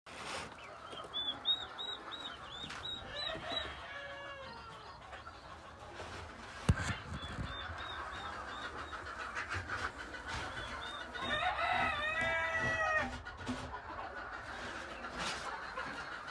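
Chickens calling: several runs of quick, high-pitched peeps, and a rooster crowing for about a second and a half near the end. A single sharp knock about seven seconds in.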